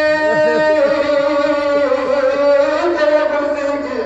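A man's voice chanting a Pashto noha (mourning lament), holding long drawn-out notes that change pitch a few times.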